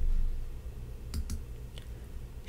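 A quick pair of light clicks a little over a second in, with a fainter one near the end, over a low steady hum. The clicks come from the presenter's computer as the slide presentation is advanced to the next step.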